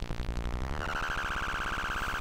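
Tabør eurorack module's four cross-modulating oscillators giving a rapid, even, buzzing pulse. Just under a second in, a steady high-pitched tone joins it as the module's knob is turned.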